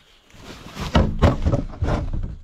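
A man grunting with effort, with knocks and denim rubbing against a chest-worn microphone as he moves about.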